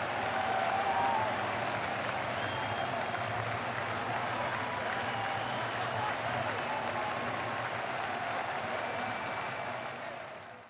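A crowd applauding steadily, starting to fade away near the end.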